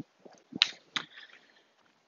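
A few short, light knocks and clicks, about half a second apart, from a person walking on a concrete path while carrying a plastic hula hoop and a golf club.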